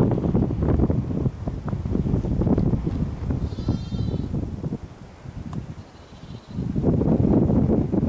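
Wind buffeting the microphone, with one short, high-pitched lamb bleat about halfway through.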